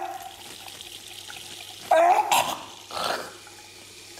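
Tap running into a metal sink basin, with a loud burst of voice about two seconds in and a shorter, noisier sound a second later.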